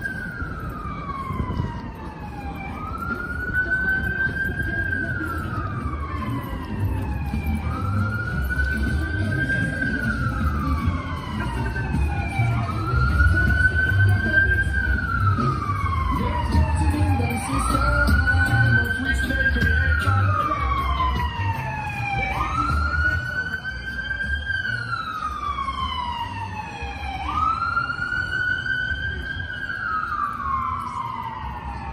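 Electronic emergency-vehicle siren on a slow wail: each cycle rises quickly and then falls slowly, repeating about every five seconds and loudest around the middle. A low rumble of street traffic runs underneath.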